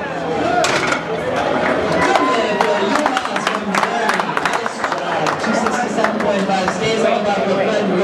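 Spectators and handlers applauding and cheering after a bench press attempt: a run of hand claps over shouting voices in a large hall.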